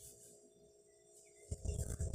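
Faint handling noise from crocheting: a steady faint hum at first, then from about halfway in low, muffled rubbing and bumping as the hands work the thread and hook close to the microphone.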